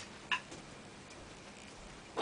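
A single short, sharp click about a third of a second in, followed by a fainter tick, over quiet room tone.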